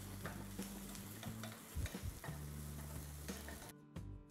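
Sliced onions frying in oil, sizzling faintly while a wooden spatula stirs them and scrapes and taps against the pot. They are being browned toward a golden brown colour.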